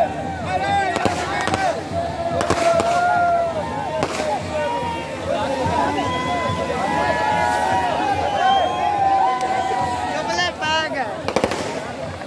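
Ground fountain fireworks spraying sparks, with several sharp cracks scattered through, over the voices of a crowd gathered around them.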